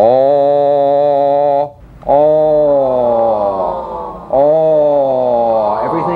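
A man's voice intoning a sustained, low-pitched 'oh' vowel three times, each tone held for about two seconds with a short breath between, the second sagging slightly in pitch: a vocal resonance exercise on a rounded vowel.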